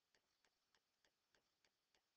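Near silence, with very faint, evenly spaced ticks several times a second.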